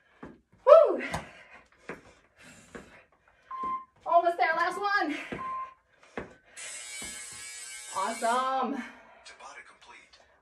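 A woman's wordless vocal sounds and exclamations, with scattered thuds of sneakered feet on a rubber floor, as she does kickboxing side kicks. Two short beeps come in the middle, and a hiss of about two seconds near the end.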